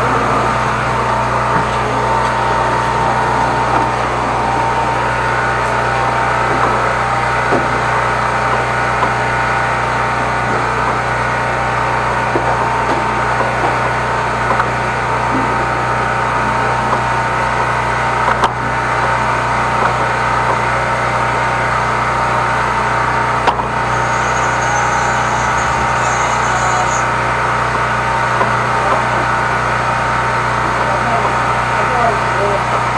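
High-pressure drain jetter running steadily, a constant mechanical hum with a fixed low tone, broken only by two short clicks in the second half.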